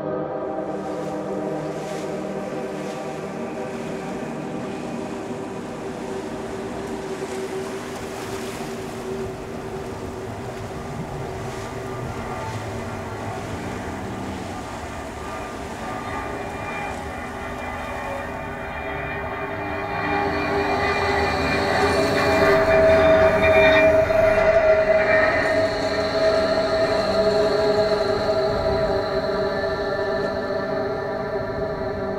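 Train running, with several steady whining tones held throughout over rail noise, growing louder about two-thirds of the way in.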